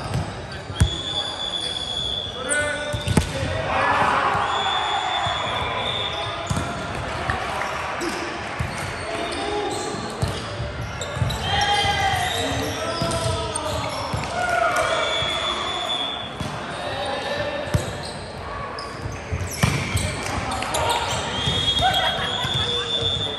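A volleyball rally in a large, echoing hall: sharp hits and bounces of the ball, sneakers squeaking on the hardwood court, and players shouting to each other.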